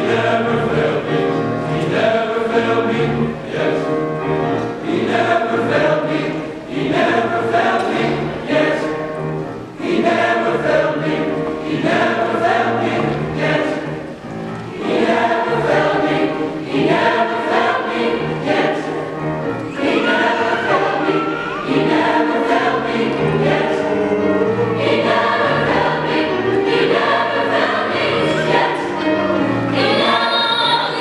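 Large mixed choir singing, with what looks like grand piano accompaniment, in continuous phrases with brief dips between them.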